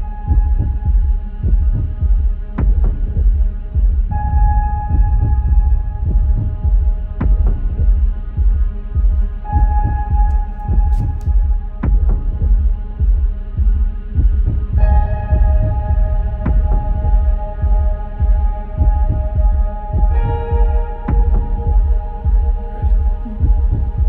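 Heartbeat sound effect pulsing steadily under a sustained synth drone whose chord shifts every five seconds or so.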